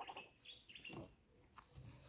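Faint bird chirps in the background: a few short, high notes in the first second, with the rest near silent.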